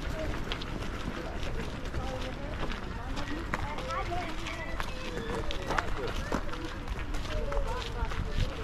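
Footsteps crunching on a gravel path while walking, with indistinct voices talking in the background.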